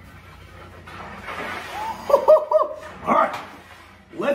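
A heavy steel plate is pushed into a spin across an oiled steel table, giving a rushing, scraping hiss. After it come three quick high yelping calls, each rising and falling, and one shorter call.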